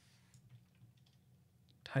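A few faint, scattered clicks from working at a computer, over a low steady hum; a man's voice starts right at the end.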